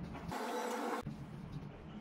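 A curtain being drawn along its rail by hand: a brief sliding rasp lasting under a second, starting and stopping abruptly.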